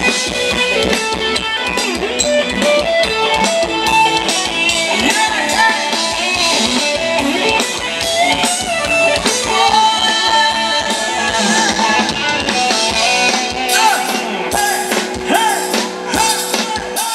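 Live band playing Thai ramwong dance music: electric guitar and drum kit keeping a steady beat, with a voice carrying the melody.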